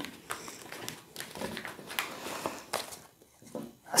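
Soft rustling and scattered light clicks of tarot cards being slid together and gathered up off a cloth-covered table.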